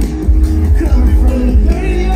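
Loud live hip-hop music through a festival sound system, heard from the crowd: heavy bass under a sung vocal line that bends in pitch.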